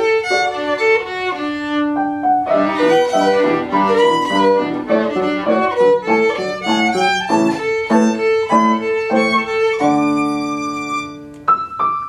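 Violin and piano playing a classical duo passage together. Near the end a long held chord fades away, and the piano goes on alone.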